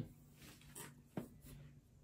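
Near silence: room tone with a faint steady hum and a single soft click a little over a second in, a small handling sound.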